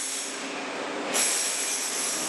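Steady noise of building-drying machines running to dry out flood-soaked rooms, a whooshing hum with a high whine that grows brighter about a second in.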